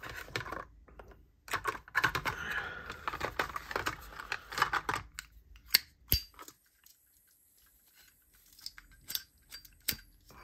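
Hands handling small hard items on a tabletop: a few seconds of dense rustling and clicking, then a sharp click about six seconds in. After a quiet stretch come a few clicks, with a sharp one just before the end as a flip-top lighter is opened and lit.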